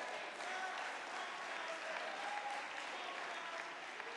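Congregation applauding steadily in a church sanctuary, with a few voices calling out over the clapping.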